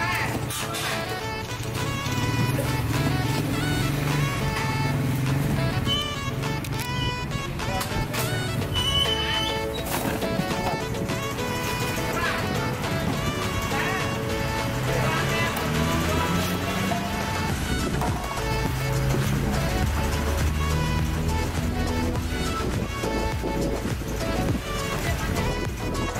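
Background music with moving bass notes and sustained melodic tones.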